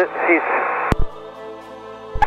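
Aircraft radio and intercom audio: the end of a spoken transmission, then a radio hiss cut off by a sharp click a little under a second in, leaving a quieter hiss with a steady hum.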